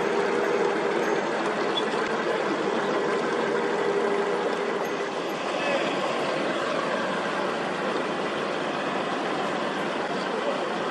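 Pushboat's diesel engine running steadily under way, with water churning from its propeller wash. A steady hum from the engine fades about five seconds in as the boat moves off.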